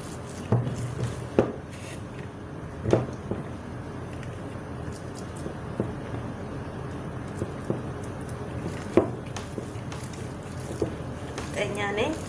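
Hands kneading soft, wet dough in an enamel bowl: quiet squishing with a few sharp knocks of hand against the bowl, over a steady background hum.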